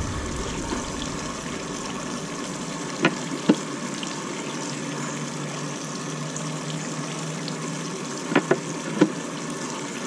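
Pliers clicking against a broken screw in the plastic wheel axle housing of a Polaris 280 pool cleaner as it is worked loose: two sharp clicks about three seconds in and a few more near the end. Under them runs a steady rush of water.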